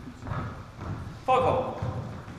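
Footsteps of players walking on a wooden court floor, a series of soft low thuds, with one brief, louder pitched sound about one and a half seconds in.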